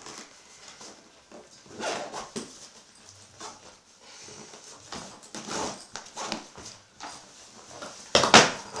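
Nylon fabric and webbing straps of a padded gear bag being handled: quiet, irregular rustles and scrapes as a strap is worked and a panel of the bag is moved.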